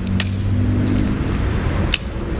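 A motor vehicle engine idling with a steady low hum, and two sharp clicks, one just after the start and one near the end.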